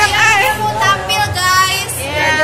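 High-pitched voices of teenage girls over background music with a low bass line.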